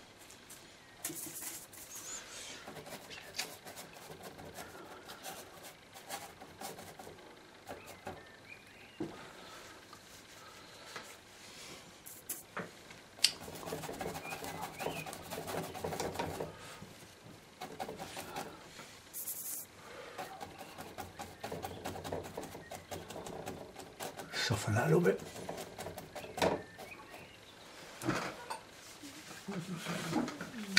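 Brush working oil paint onto an MDF painting board, with scattered short taps and scrapes. A voice murmurs low, without clear words, in a few stretches, loudest in the second half.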